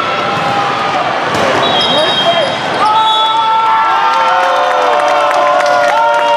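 Volleyballs being hit and bouncing on a busy tournament floor in a large echoing hall, with players shouting and calling out. A short high whistle sounds about two seconds in, and from about three seconds on several voices hold long shouts over one another.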